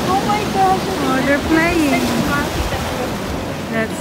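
Ocean surf washing in over a rock shelf, a steady rush of breaking whitewater, with voices talking over it through the first half.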